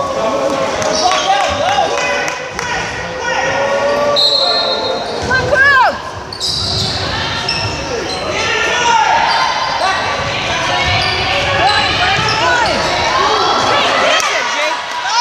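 Gymnasium crowd noise during a basketball game: many voices shouting and calling, with a basketball bouncing on the hardwood court and short sneaker squeaks, all echoing in a large hall.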